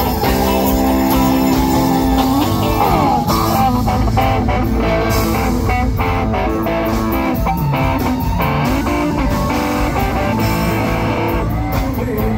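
Live Thai rock band playing loudly through a PA in an instrumental passage, an electric guitar leading over bass and drums. Sustained notes bend upward about two and a half seconds in, followed by quicker runs of notes.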